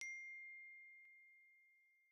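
A single bell-like ding: one sharp strike that rings at one clear pitch and fades away slowly, with a faint tick about a second in.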